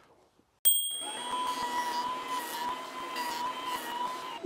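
Wahuda benchtop jointer running, coming in abruptly about half a second in with a steady, high motor whine over an even rushing noise.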